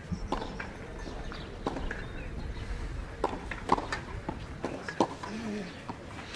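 Tennis ball struck back and forth by rackets in a rally on a clay court: a series of sharp pops, many of them about a second to a second and a half apart, with players' footsteps on the clay.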